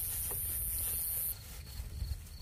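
Night insects: a steady, high-pitched buzz that cuts off suddenly a little past halfway, followed by faint, evenly pulsing cricket chirps.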